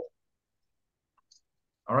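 Near silence with two faint clicks a little over a second in; a man's voice starts just before the end.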